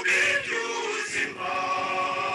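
A choir singing, several voices holding long notes together.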